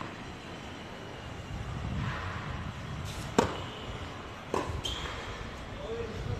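A tennis racket striking the ball on a serve, one sharp pop about halfway through. A fainter hit follows about a second later as the ball is returned.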